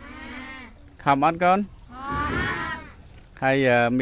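Cattle mooing: a faint drawn-out moo at the start, then a louder, breathier moo about two seconds in.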